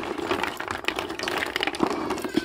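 Large snail shells clacking and knocking against one another and the plastic basin as a hand stirs them in water, with water sloshing: rapid, irregular clicking throughout.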